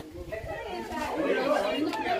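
Indistinct chatter of several voices talking over one another, with no clear words.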